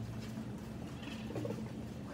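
Steady low room hum with a few faint taps.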